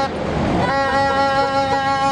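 Plastic horn blown in a long, steady held note. The note breaks off briefly near the start while the rush of a passing vehicle comes through.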